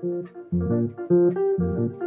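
Electronic keyboard playing a makossa groove: short, low left-hand bass notes about every half second under repeated right-hand chords.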